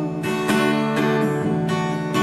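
Acoustic guitar strummed in a slow accompaniment, its chords ringing on between strums, with a fresh strum about half a second in and another near a second and a half.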